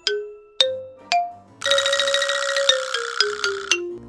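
Comic sound-effect cue: three bell-like struck notes rising in pitch, then a buzzy tone that steps down in pitch for about two seconds, signalling a failed attempt.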